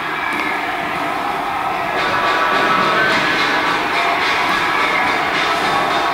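Steady, even background noise of a large, echoing gym hall, with faint musical tones coming in from about two seconds in.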